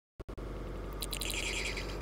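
A bird-call sound effect for the vulture: a high, wavering call that starts about halfway through.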